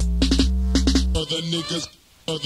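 Hip hop beat from a early-1990s cassette: drum-machine hits over a long, deep bass note. About a second in the bass drops out and higher pitched melodic parts that bend in pitch carry on.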